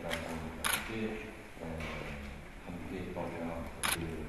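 A narrator speaking steadily, with two brief sharp hissing strokes, one a little under a second in and one near the end.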